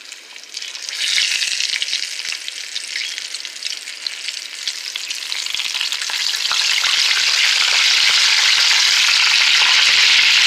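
Flour-coated chicken pieces frying in hot grease in a skillet. The sizzle swells about a second in as the first piece goes in, then grows louder and steadier from about six seconds in as more pieces go in, with scattered crackles.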